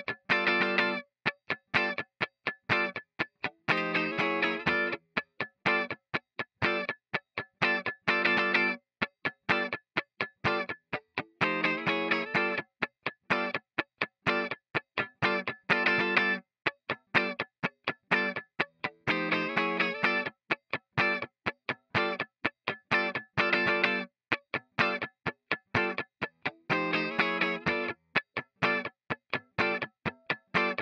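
Electric guitar, a Les Paul Custom-style solid body, playing a funk rhythm part: short, sharply cut-off chord stabs with a steady run of muted, percussive scratch strokes between them.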